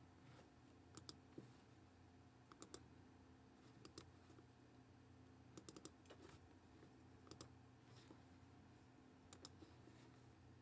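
Faint, sparse clicking, in twos and threes every second or two, over a low steady hum.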